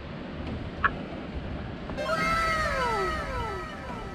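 A drawn-out meow-like cry that falls slowly in pitch, starting about halfway through and repeated in overlapping copies, over steady low background noise. A short sharp blip comes about a second in.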